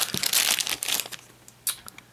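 Plastic and foil candy wrappers crinkling as hands rummage through a pile of packaged sweets. The rustle is densest in the first second, then thins to a few faint crackles, with one sharper crackle near the end.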